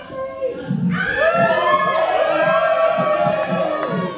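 Party dance music with a steady beat, and from about a second in a crowd of voices singing and shouting along over it.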